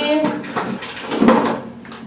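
Rummaging in a bathroom cupboard: several short bursts of things being moved and knocked about, with a little indistinct speech at the start.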